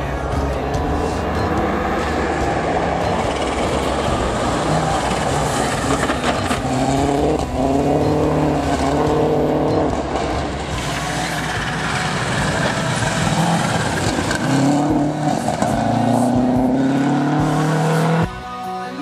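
Subaru Impreza rally car's flat-four engine driven hard on a gravel forest stage, its note climbing through the revs in repeated steps about seven seconds in and again near the end as it accelerates through the gears, with tyre and gravel noise underneath.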